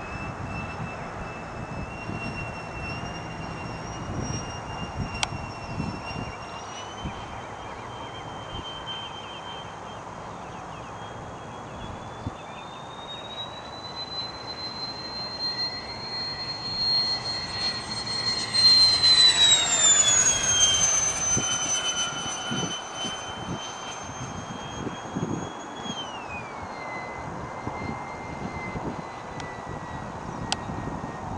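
Electric ducted fan of a HABU 32 RC jet (Tamjets TJ80SE fan driven by a Neu 1509 motor) whining high overhead in flight. The whine rises in pitch around the middle, is loudest with a falling sweep a little past halfway, and drops to a lower pitch near the end.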